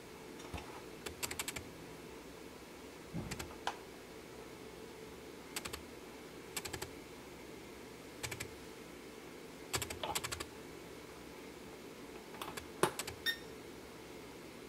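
Hard plastic clicking and clattering in short clusters of sharp clicks, every second or two, as a toy quadcopter's remote controller and parts are handled on a table. A short electronic beep sounds near the end.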